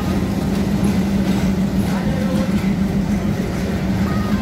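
Diesel locomotive hauling passenger coaches past close by, its engine running with a steady low drone over the rumble of the moving train.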